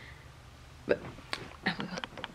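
A woman's voice: after a near-quiet second of room tone, she says a short word and makes a few brief vocal sounds.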